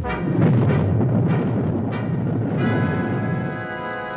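Film sound effect of a rocket salvo launching: a sudden roaring rumble with several sharp blasts over the first two and a half seconds, mixed with orchestral music that then settles into a held chord.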